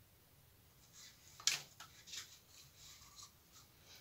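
A sharp tap about one and a half seconds in, then a few soft scrapes and rubs: a plastic paint cup and plastic spoon being handled.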